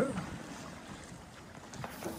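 Faint, steady hiss of light wind and water aboard an IMOCA 60 racing yacht moving slowly across a glassy calm sea.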